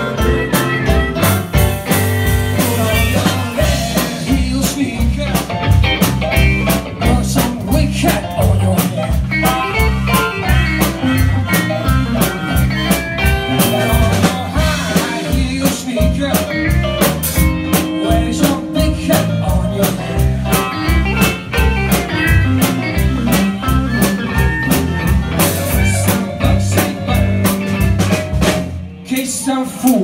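Live blues band playing electric guitars, bass, drum kit and keyboard to a steady beat, with a short break in the sound just before the end.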